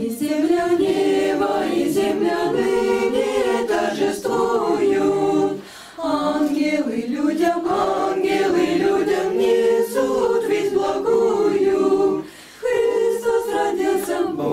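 Youth choir of girls' and boys' voices singing a Russian Christmas carol a cappella, in three long phrases with brief breaks for breath between them.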